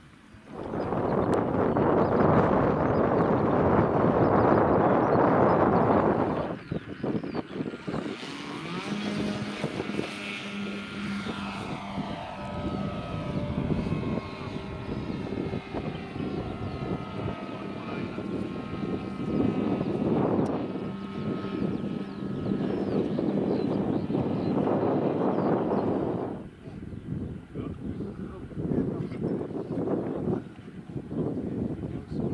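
Electric motor and propeller of a quarter-scale RC Piper J-3 Cub tow plane running at high power while towing a glider. A loud rush comes first, then a steady whine whose pitch falls in places as the model flies past.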